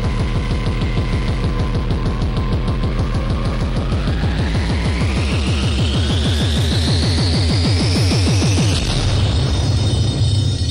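Hardcore techno with a fast, steady kick drum. A rising sweep climbs in pitch from about four seconds in. Shortly before the end the kicks drop out, leaving a low rumble.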